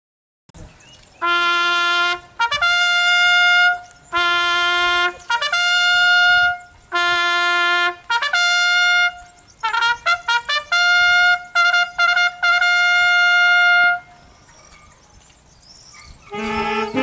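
Solo trumpet sounding a military signal call for the flag-raising, on just a few bugle-like notes: three short-then-long note pairs, then a run of quick notes and a long held final note that stops about two seconds before the end.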